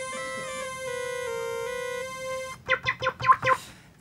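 Synthesizer holding a sustained chord, with a few of its notes stepping to new pitches partway through. It cuts off after about two and a half seconds and is followed by a few short choppy sounds.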